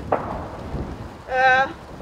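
Low rumble of wind buffeting an outdoor microphone, with a knock just as it starts. About one and a half seconds in comes a short held voice sound, a speaker's drawn-out hesitation, the loudest thing heard.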